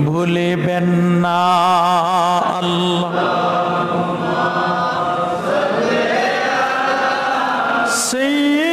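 A solo man's voice chanting an Islamic devotional melody into a microphone, with long held notes that waver with vibrato and turn slowly in pitch.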